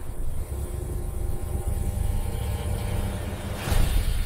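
A deep, steady rumbling drone of a logo-reveal sound effect, with a whoosh swelling up near the end.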